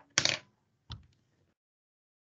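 A short clattering knock about a quarter second in, followed by a fainter sharp click about a second in and a few faint ticks.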